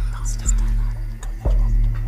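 Contestants conferring in low voices over quiz-show background music, a steady low drone with no clear beat.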